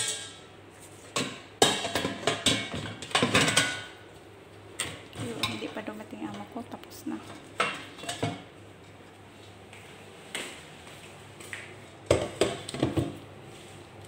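Dishes and kitchen utensils knocking and clattering on a counter in irregular bursts, busiest in the first few seconds and again near the end.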